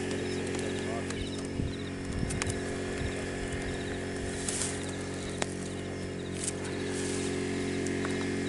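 A steady low hum made of several even tones, like a small running motor, with a faint, fast, regular chirping above it and a few light knocks and clicks.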